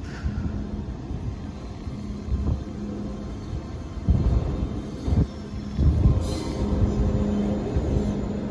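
An MTR Tsuen Wan line electric train runs slowly over the depot tracks: a low rumble with a steady hum and several irregular low thumps.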